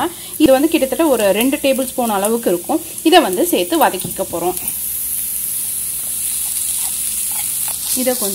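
A woman's voice talks for about four seconds, then onions frying in oil in a pan sizzle steadily as ginger-garlic paste is stirred in with a wooden spatula.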